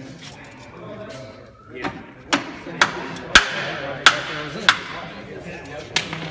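Metal knocking and clinking on a riding-tractor transmission case as its halves are worked apart: about seven sharp, ringing strikes, starting about two seconds in and spaced roughly half a second apart, over low background voices.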